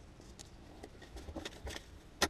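Craft knife cutting a paper template along a steel ruler: a few faint scratches and small ticks.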